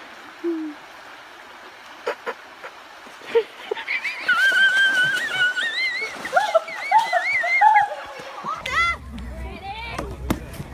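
A person splashing into a shallow pond off the stepping stones, followed by a long, high-pitched, wavering shriek.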